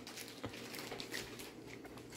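Faint crinkling and a few light clicks of clear zip-top plastic bags being handled and opened by hand.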